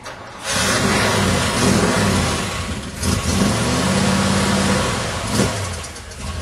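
Car engine running as the vehicle drives along, with wind rushing over the microphone. The sound comes in abruptly about half a second in and stays loud throughout.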